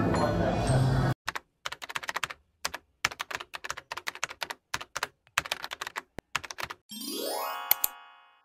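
Keyboard typing sound effect: a quick, irregular run of key clicks, followed near the end by a rising, ringing sweep with a bright ding that fades out. Before it, about a second of shop background music and voices cuts off abruptly.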